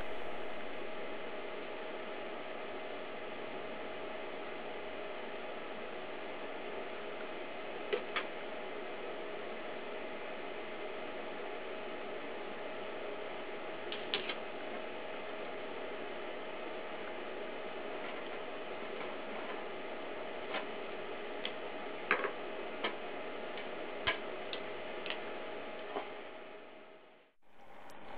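A steady mechanical hum with one held tone, joined by a few light clicks and taps as glass tubing and a ruler are handled on a bench; it fades out near the end.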